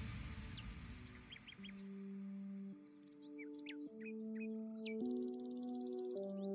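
Soft ambient background music: sustained chords that change about once a second, with short bird chirps over them. A noisy wash fades out over the first two seconds.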